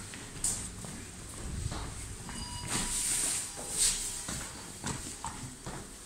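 Footsteps on a hard floor, with a loud hissing rustle from about three to four seconds in.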